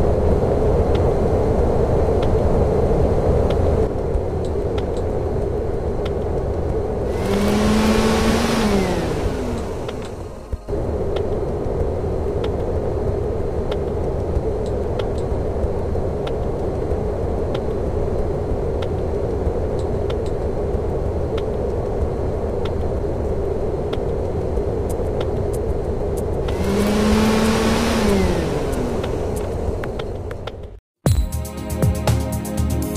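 Car engine running steadily, with two pass-bys, about 8 seconds in and again near the end, each one swelling and then dropping in pitch as the car goes by.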